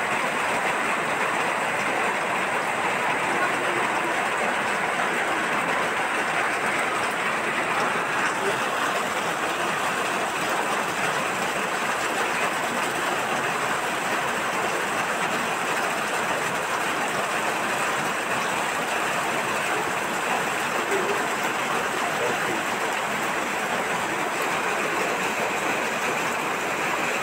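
Heavy rain pouring steadily, an even rushing noise with no let-up.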